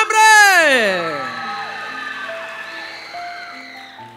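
Dramatic TV music sting: a loud synthesized tone with many overtones sweeps steeply down in pitch over about a second and a half. Then a few held notes fade away slowly.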